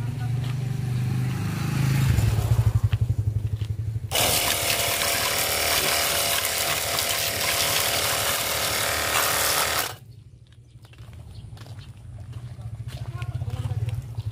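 Battery-powered portable pressure washer blasting a jet of water onto a motor scooter's engine and rear wheel. The loud hiss of the spray starts about four seconds in and cuts off suddenly near ten seconds. A low pulsing hum runs under it throughout.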